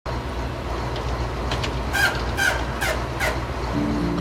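Garbage truck's engine running with a steady low hum while its lift tips a waste container, with a string of short, sharp metallic squeals and clanks in the middle stretch.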